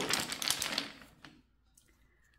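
Wooden rune discs clicking against each other inside a cloth drawstring bag as a hand rummages through them, a dense run of small clicks that thins out and stops about a second and a half in.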